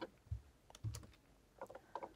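A few faint computer keyboard taps, spaced out, as the code cell is run and the next one selected.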